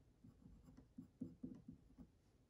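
A pen drawing short lines on paper, a faint series of strokes, the strongest about a second in.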